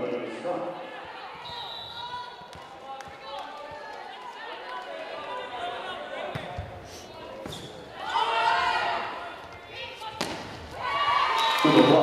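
Indoor volleyball rally in a gym: several sharp hits of the ball echo in the hall, over a background of crowd and player voices that swell about eight seconds in.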